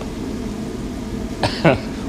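Steady low rumble of the gas fire under a copper kettle of boiling sugar syrup, with the batch at about 236°F. A man's voice starts near the end.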